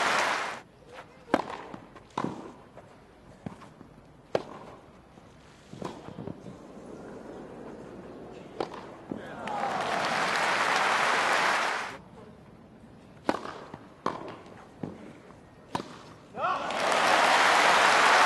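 Tennis balls struck by rackets in two grass-court rallies, sharp single pops a second or so apart. Crowd applause follows each point, once about halfway through and again from near the end.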